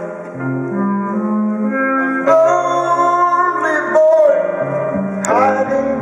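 Live band music with singing, recorded from the audience in an arena: held keyboard chords over a bass line, with short voice-like pitch glides about two, four and five seconds in.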